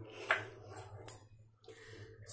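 Small bowls of ingredients being handled on a counter: a soft knock about a third of a second in and a brief sharp clink just after one second, over a faint low hum.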